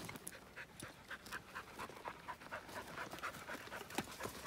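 A herding dog panting quickly and faintly, about five breaths a second.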